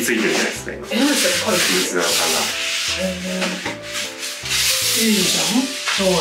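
Sponge with bath detergent scrubbing a wet, foamy glass bathroom mirror in repeated back-and-forth strokes, lifting the surface grime from it.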